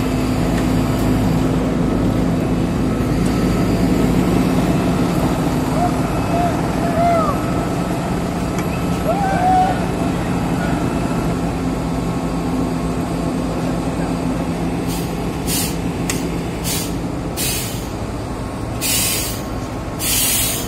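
Diesel engine of a Volvo ABG6870 asphalt paver running steadily at a low, even pitch. Over the last few seconds there are several short bursts of hiss or scraping.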